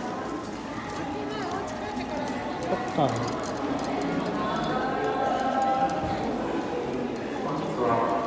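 Indistinct chatter of several voices in a cinema lobby, with footsteps and small clicks mixed in.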